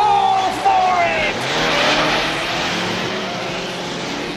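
Cartoon sound effects of vehicles driving off at speed: engines rev with a rising whine at the start, then falling tones about a second in like vehicles rushing past, over a steady rushing noise.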